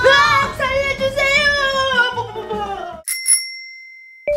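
Upbeat children's song with a sung 'chicken' chant over a bass beat, cut off suddenly about three seconds in. A bright bell-like chime then strikes twice in quick succession and keeps ringing.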